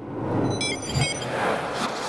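Animated logo sting: a rising whoosh, with a quick run of short, high electronic blips and a low hit about a second in.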